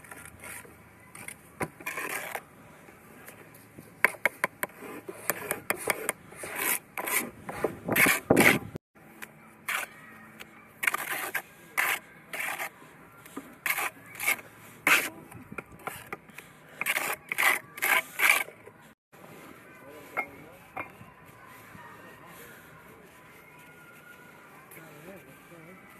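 Steel bricklaying trowel scraping and slapping mortar into the frogs of laid bricks: a quick series of short scrapes and knocks, the busiest around the middle, thinning out near the end.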